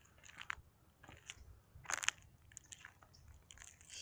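Faint, irregular clicks and crackles of handling noise on the camera's microphone, the sharpest about two seconds in.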